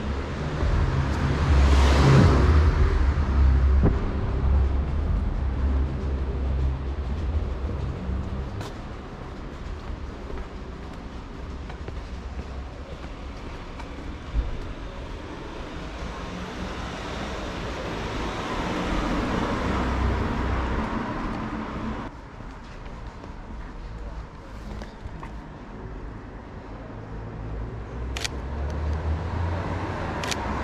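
Street traffic ambience: a car passes about two seconds in and another around twenty seconds, each swelling and fading over a steady low rumble. A few sharp clicks near the end.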